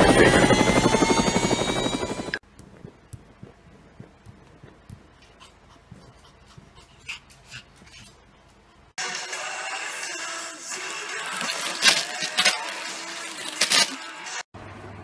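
Toy RC helicopter's electric rotor motor whining upward in pitch as it spins up, cutting off suddenly about two seconds in. A quiet stretch of scattered small clicks follows. From about nine seconds there is a louder stretch of rustling with sharp crackles.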